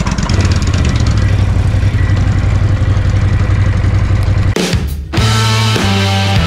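2017 Ducati Monster 1200 S's L-twin engine idling steadily. About four and a half seconds in it breaks off abruptly and rock music begins.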